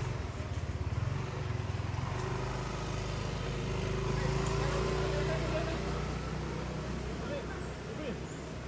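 A motor vehicle engine running steadily close by, a low hum that is a little uneven in the first second or so.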